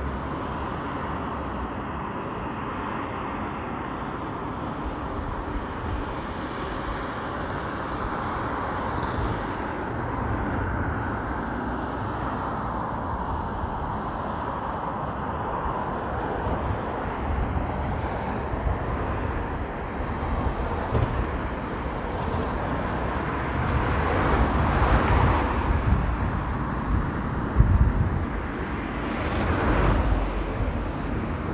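Steady city traffic noise heard from a bridge, with a vehicle passing louder about three-quarters of the way through and a single low thump shortly after.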